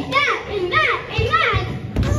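Children's voices calling out in three short rising-and-falling shouts about half a second apart, with a thump on the wooden stage near the end.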